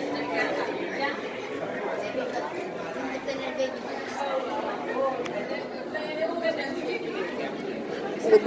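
Background chatter of many voices in a large indoor hall, with no single voice standing out.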